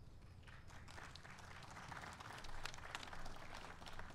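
Faint audience applause: many hands clapping, starting about half a second in, swelling in the middle and dying away near the end.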